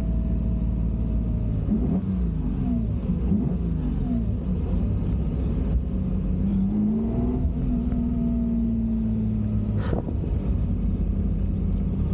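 The 1960 Ferrari 250 GT Drogo's V12, heard from inside the cabin while driving. Its revs swing up and down a few times about two to four seconds in, then it holds at steady revs, with a single sharp click near the ten-second mark.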